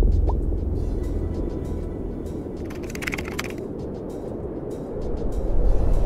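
A sudden deep boom opens into a low, steady rumble under background music, easing off and then swelling again near the end: a title-transition sound effect.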